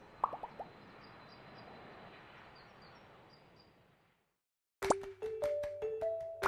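Animation sound effects: four quick pitched blips in rapid succession near the start, then a soft hiss that fades away into a brief silence. Light music with a clicking, plucked beat and short repeated notes starts about five seconds in.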